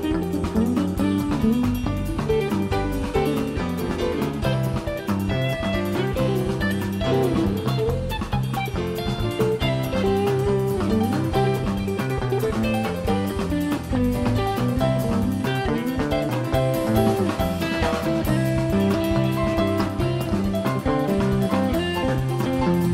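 Live rock band playing an instrumental passage: electric guitar, bass guitar, drum kit and keyboards together over a steady beat.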